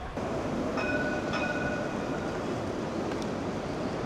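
City street noise: a steady rumble of passing traffic. About a second in, a high squeal of several tones rings out for about a second and a half.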